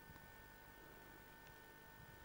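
Near silence, with a faint steady high hum.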